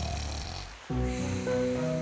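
A cartoon wolf snoring in his sleep, the snore dying away in the first second. About a second in, background music with held notes begins.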